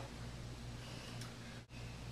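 Quiet room tone: a steady low hum with faint hiss, with a faint tick a little past halfway and a brief dropout to silence near the end.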